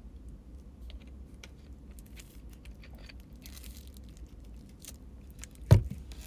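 A person drinking from a plastic bottle: small clicks and swallowing sounds, with a brief hiss a little past the middle. Near the end comes a single loud, sharp thump, the loudest sound here.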